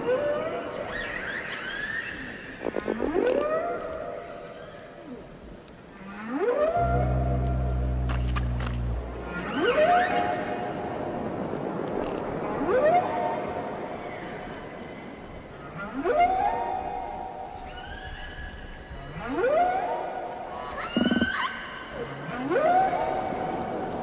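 Underwater recording of whales calling: a series of rising, whooping calls, one every two to three seconds, each sliding up in pitch and then holding with overtones. A long low moan comes about seven seconds in. A steady wash of ocean noise lies underneath.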